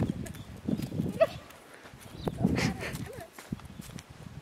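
Soft thuds of a kangaroo's feet hopping on sandy ground, uneven and scattered. A person's voice is heard briefly a little past the middle.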